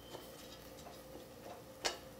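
Metal fork clinking against a stainless steel pot while stirring spaghetti: a few light taps, then one sharper clink near the end.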